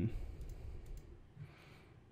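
A few faint, scattered computer mouse clicks on a desk as the modeling software is worked.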